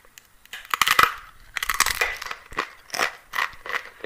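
A Jolo Chip, a spicy tortilla chip, bitten about half a second in with a burst of loud, sharp crunches, then chewed with repeated crisp crunches.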